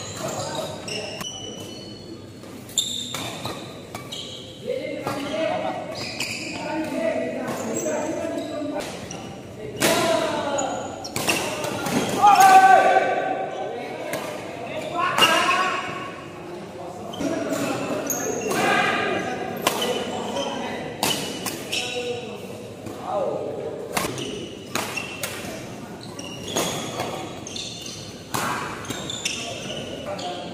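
Badminton rackets hitting a shuttlecock in quick rallies: sharp, repeated strikes with echo from a large hall. Players' voices call out between and during the rallies, loudest about twelve seconds in.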